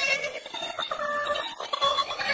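A 'G-Major' audio effect: several pitch-shifted copies of a sound stacked on top of each other, so that many pitches sound at once and shift together in short choppy steps.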